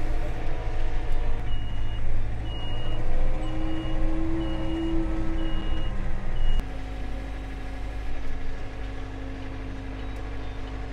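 John Deere compact utility tractor's diesel engine running while it manoeuvres, with a backup alarm beeping about once a second for some five seconds. About six and a half seconds in, the beeping stops and the engine note drops to a lower, quieter hum.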